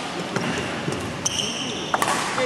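Indoor badminton hall ambience between points: a steady murmur of spectators, a couple of sharp knocks, and a brief high squeak near the end.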